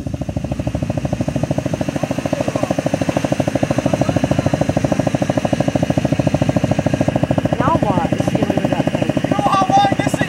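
An ATV engine idling with a steady, even pulse at a constant level. A brief voice breaks in about eight seconds in and again near the end.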